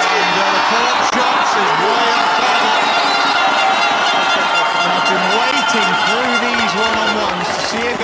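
Loud stadium crowd at a field hockey shootout: many voices shouting over one another, with talking over the crowd noise.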